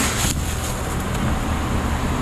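Plastic bubble wrap crinkling briefly at the start as a wrapped bottle is handled, over a steady low hum.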